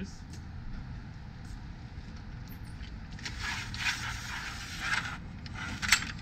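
Manual RV awning arm being worked: scraping and rattling as the arm is slid up along its track, ending in a sharp click as it latches into place.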